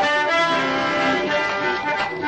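Qawwali music: a harmonium playing held notes, with no singing.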